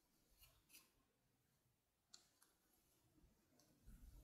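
Near silence, with a few faint, soft ticks of a metal crochet hook working through yarn.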